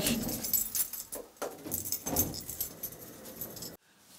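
Light metallic jingling of small metal pieces, scattered and irregular, cutting off suddenly near the end.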